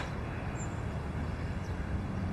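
Steady low background rumble of outdoor ambience, with no distinct events.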